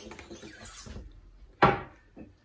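Squeegee scraping leftover screen-printing ink off the screen and back into the jar, then one sharp knock about a second and a half in.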